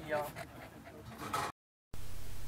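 A kenneled dog making brief sounds near the start, fading out, then the sound cuts off completely about one and a half seconds in.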